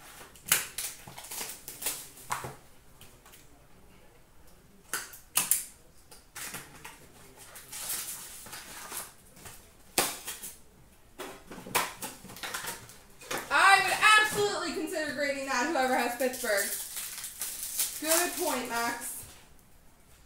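A hockey card box and its foil-wrapped packs being opened by hand: a run of crinkles, rustles and short tearing sounds of cardboard and wrapper. A voice comes in over the second half.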